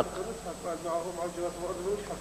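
Quiet, indistinct speech: a soft voice talking, much fainter than the lecturer's loud speech on either side.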